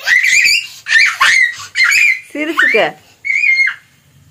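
A young child's high-pitched squealing voice, five short bursts with the pitch rising and falling.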